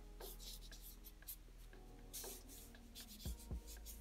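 Felt-tip marker scratching short, quick strokes across paper, a series of brief strokes at irregular intervals.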